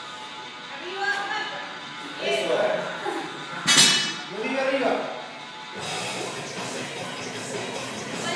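A loaded barbell with iron plates is dropped onto a tiled floor about halfway through: one sharp clang with metallic ringing after it. Background music and voices run underneath.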